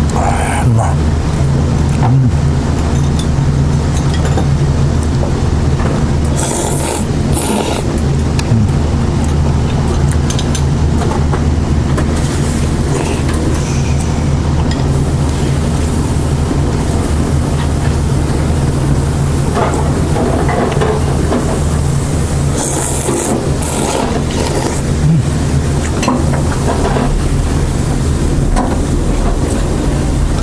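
A man slurping ramen noodles and soup, short noisy slurps around 7 and 23 seconds in, over a steady low mechanical hum.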